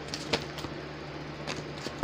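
A few light clicks over a steady low hum.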